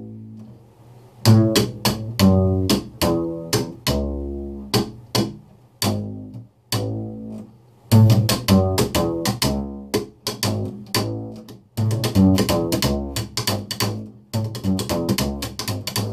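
Upright bass played slap style: plucked low notes, strings snapping back against the fingerboard, and sharp percussive slaps in a quick rhythmic lick. The run starts about a second in and breaks off briefly twice, around the middle and about three-quarters through.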